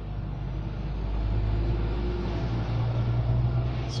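A low, steady rumble with a deep hum that swells from about a second in and eases off near the end.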